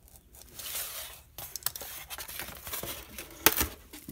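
Craft knife drawn along a ruler, scoring the paper face of a foam core board without cutting through the foam: a series of scratchy cutting strokes. Near the end a single sharp crack, the loudest sound, as the board is folded along the score.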